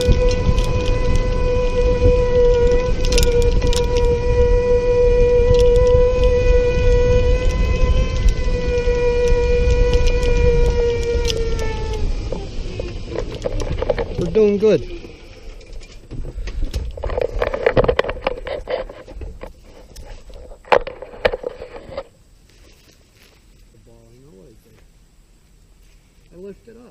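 A motor running steadily with a pitched whine over a low rumble, winding down and fading about twelve seconds in. After it come a few sharp knocks.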